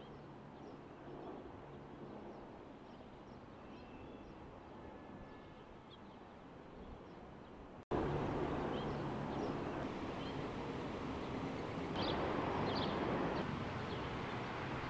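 Urban outdoor ambience: a steady hum of distant city traffic with small bird chirps over it. About eight seconds in, the background jumps abruptly louder and fuller, and a few more chirps come near the end.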